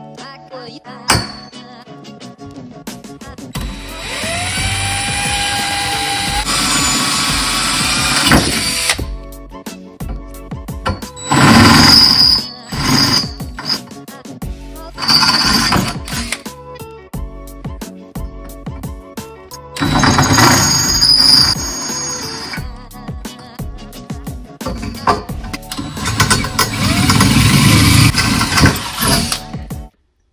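Background music over a power drill boring through a metal rail tube, running in several bursts of a few seconds each.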